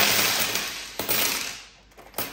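Loose coins pouring out of a zippered wallet onto a wooden desk: a dense rush of clinking that thins out and stops about a second and a half in.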